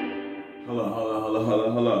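An electric guitar note rings out and fades, then about halfway through a man sings a low, held note, ending on the word "love".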